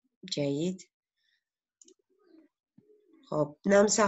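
A voice speaks briefly, then in a pause a few faint clicks of a computer mouse as the page is scrolled, and the voice resumes near the end.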